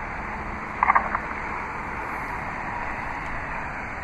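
Steady outdoor background noise with no distinct source, and a brief faint chirp about a second in.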